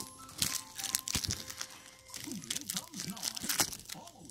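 Crinkly plastic wrappers being handled and pulled apart, a quick run of crackles and rustles in the first half.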